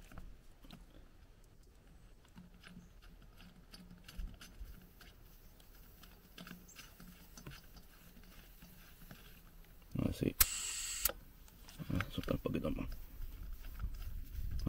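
Faint clicks and rustling of hands working a brass air-hose fitting on an off-road tire's valve, then, about ten seconds in, a short, loud hiss of air lasting under a second, followed by more handling noise. The tire is being aired down for more grip on the trail.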